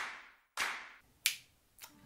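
A sharp percussive hit with a short ring-out about half a second in, then two sharp finger snaps near the end.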